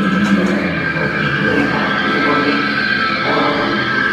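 Live band playing loudly, electric guitar to the fore, with a steady high tone held throughout.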